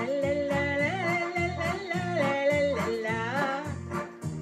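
Electronic keyboard playing a melody in a lead voice with sliding, bent notes over a steady bass and rhythm accompaniment.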